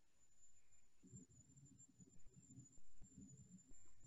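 Near silence: faint room tone from an open microphone, with a faint steady high tone and soft, irregular low bumps from about a second in.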